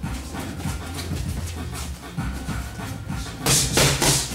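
Boxing gloves smacking into Thai pads twice in quick succession near the end, over a low steady hum.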